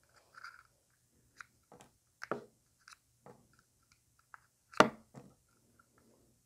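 Scattered small clicks and rubbing as red rubber fins are slid out of a plastic Rycote cube mic flag frame and set down on a table. The loudest click comes near the five-second mark.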